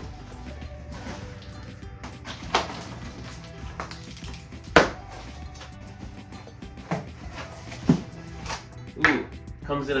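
Cardboard shipping box being opened: packing tape slit with a knife and the flaps pulled apart, giving about five sharp cardboard snaps, the loudest near the middle, over background music.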